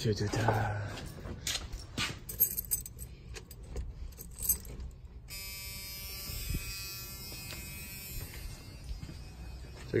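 Keys jingling and clicking as the ignition key of a 1986 Ford Bronco is handled and turned. About five seconds in, a steady electric buzz starts and holds, the sign of the key now being switched on.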